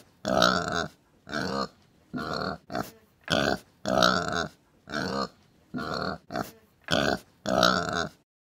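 Domestic pigs grunting: a run of about a dozen short grunts with brief pauses between them.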